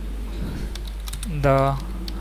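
Computer keyboard typing: a quick run of light key clicks as words are entered.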